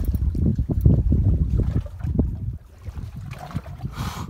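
Low, gusty rumble of wind buffeting the microphone over water on an open boat, easing off a little past halfway.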